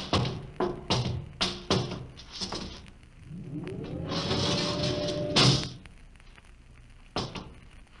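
Radio-drama sound effects of a spaceship interior. A run of sharp knocks, like footsteps on a metal deck, is followed by a rising mechanical whine over a hiss. This ends in a loud clunk, as of a powered hatch or door, and one more knock comes near the end.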